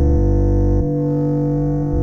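Rock music: heavy distorted electric guitar chords held, with the low notes shifting about a second in.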